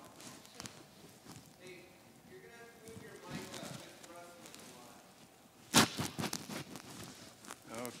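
Clip-on lapel microphone being handled at the wearer's collar: scraping and rustling against clothing, with one loud knock near the end followed by a quick run of smaller clicks and rubs. The microphone has fallen loose and is being refitted.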